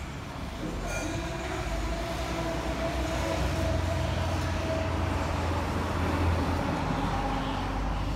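Low, steady rumble of a heavy road vehicle's engine with a steady whine over it; the whine comes in about a second in and fades out after about five seconds.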